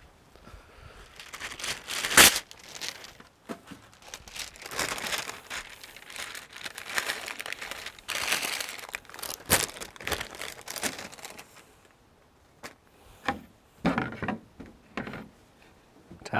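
Baking paper being pulled from its roll and torn off with a sharp rip about two seconds in, then crinkling and rustling as the sheet is smoothed out on a board. A few light knocks near the end.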